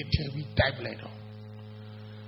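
Steady low electrical mains hum. A man's amplified voice says a few syllables in the first second, then the hum carries on alone.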